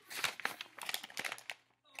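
Sheet of paper crinkling and rustling in irregular crackles as it is wrapped around a pencil and scrunched by hand, with a brief pause near the end.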